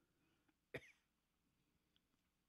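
Near silence, broken about three-quarters of a second in by a single short cough from a man close to the microphone.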